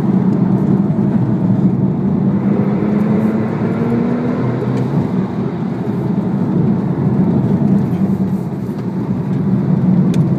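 Porsche 911 Turbo S (997) twin-turbocharged flat-six heard from inside the cabin under hard driving through bends, its note rising and falling with the throttle over steady road noise.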